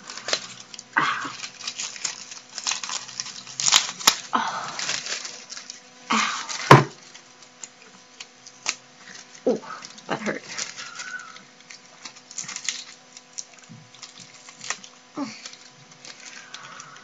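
Strips of adhesive tape being ripped off skin and paper crinkling, in repeated short bursts, with a few brief pained vocal exclamations between the pulls.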